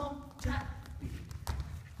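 Dancers' shoes stepping and stamping on a stage floor, with two sharper footfalls about half a second in and a second and a half in.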